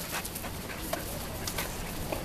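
A dog panting close by, with a few short scuffs or knocks.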